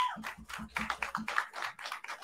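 Light, scattered applause from a small audience and panel, with individual hand claps heard separately and irregularly.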